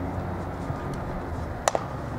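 A single sharp crack, doubled in quick succession, about one and a half seconds in: a pitched baseball arriving at home plate, over a steady low ballpark background.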